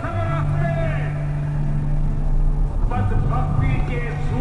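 A song with a singing voice plays over a steady low hum from the car driving; the voice pauses for about two seconds in the middle.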